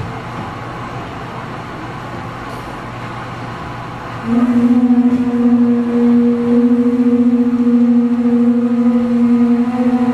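Conch shell trumpets (pū) blown, one long steady note that starts about four seconds in and is held for the rest of the time, over the low murmur of the hall.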